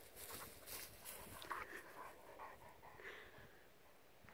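Faint, irregular panting breaths.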